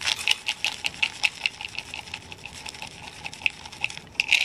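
A cat eating from a bowl right by the microphone: a steady run of sharp, clicking crunches, about six a second.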